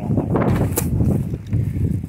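Wind buffeting the microphone in a low, uneven rumble, with a single sharp click a little before halfway through.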